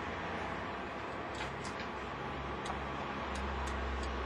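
Steady city street ambience with traffic noise; a low vehicle rumble swells near the end, and a few light clicks sound in the middle.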